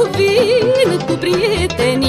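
Romanian folk music playing, with a lead melody full of quick trills and turns over a steady, pulsing bass beat.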